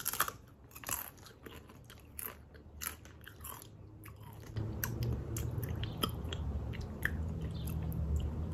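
A Doritos tortilla chip bitten and chewed close to the mouth, with crisp crunches through the first half. From about halfway a low steady hum comes in under the quieter chewing.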